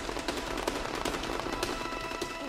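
Dense crackling: a rapid, irregular patter of small clicks over a hiss, with faint steady music tones underneath.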